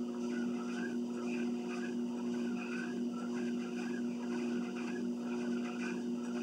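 Motorized treadmill running: a steady motor hum with a higher whine that wavers up and down over it.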